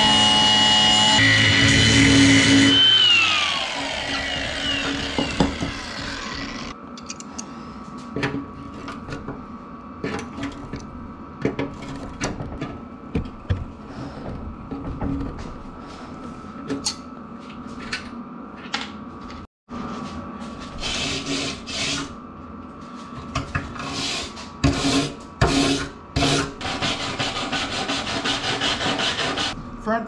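Milwaukee cordless angle grinder cutting at a stripped bolt on a steel door hinge bracket, a loud steady high whine that winds down in falling pitch about three seconds in as it is released. After that come scattered clicks and metal-on-metal scraping from hand tools on the bracket, with bursts of rasping scrape in the last ten seconds.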